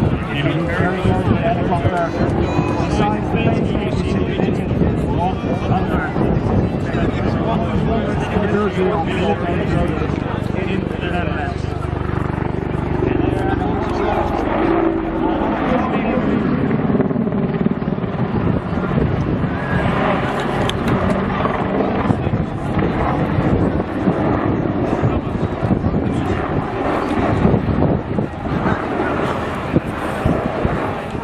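Boeing AH-64 Apache attack helicopter's rotor and twin turbine engines during an aerobatic display flight, a steady loud rotor noise that shifts in pitch as the helicopter manoeuvres, with a public-address voice mixed in.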